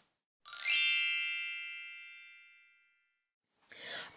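A bright chime sound effect: a quick upward sweep of ringing tones about half a second in, then a ring that fades away over about two seconds.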